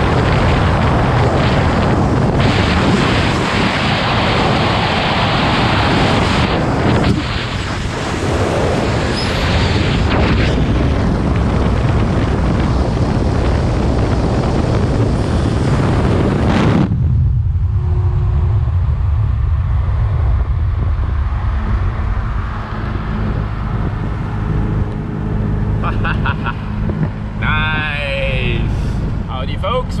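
Wind rushing over a camera mounted outside a car at highway speed, together with road noise. About 17 seconds in it cuts off sharply to a quieter, steady low drone of engine and tyres.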